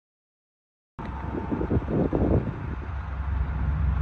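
Total silence, then about a second in a loud steady low rumble starts abruptly, with wind buffeting the microphone, strongest in the first second or so.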